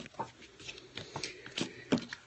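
Hands handling a paper card and craft supplies close to the microphone: scattered light rustles and clicks, with a sharper knock near the end.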